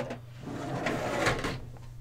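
A drawer is pulled out along its runners, sliding for about a second after a sharp knock at the start.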